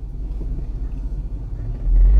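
Low, steady rumble of a car heard from inside the cabin, swelling briefly near the end.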